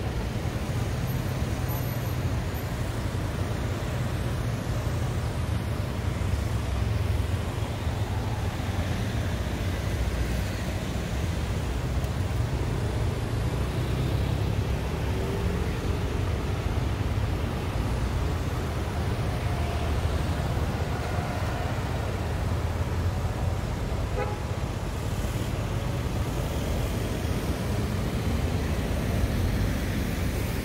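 Steady city road traffic: cars and motorcycles driving past, with a constant low rumble.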